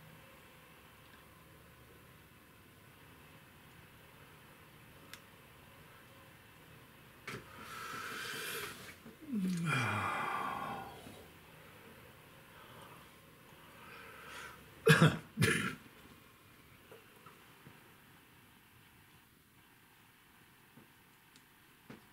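A man clearing his throat with a long rasp whose pitch falls, about a third of the way in. Then two sharp coughs come close together about two-thirds of the way through and are the loudest sounds. Otherwise only faint room tone.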